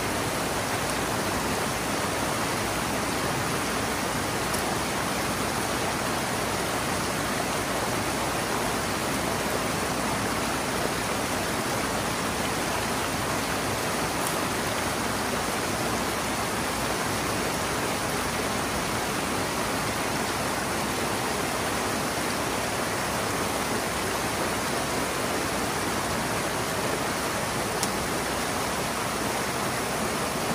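Water rushing steadily through a breach opened in a beaver dam, a constant foaming flow pouring through the gap.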